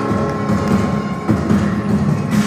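A live acoustic band plays an instrumental passage of sustained chords, with a couple of short percussive knocks about a second and a half in.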